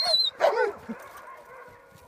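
Tamaskan dogs making vocal sounds as they play: a high whine at the start and a short yip about half a second in, then quieter.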